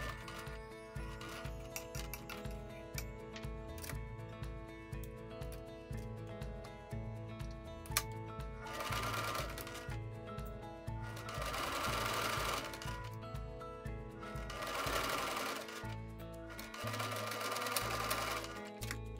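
Domestic electric sewing machine running a straight stitch through cloth, its needle strokes pulsing in a quick, even rhythm, with background music.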